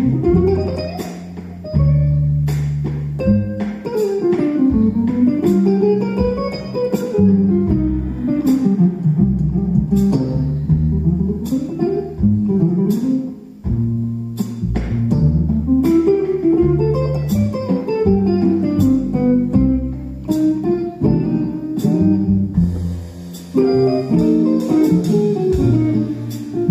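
Hollow-body archtop electric jazz guitar playing quick single-note runs that climb and fall, over plucked upright double bass notes.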